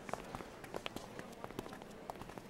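Quiet bustle of a gathered crowd: scattered footsteps, taps and small clicks at an uneven pace over a soft background noise.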